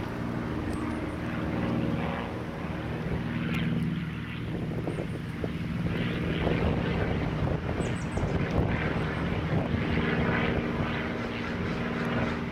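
A steady engine drone with an even low hum of several pitches, louder for a few seconds past the middle.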